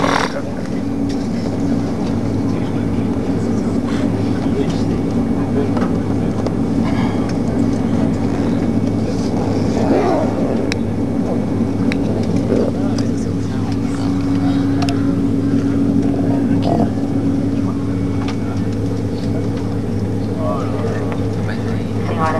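Steady low drone of an Airbus A330-200 heard from inside the cabin while it taxis on the ground after landing, its engines running at low power: a constant low hum with a steady tone above it.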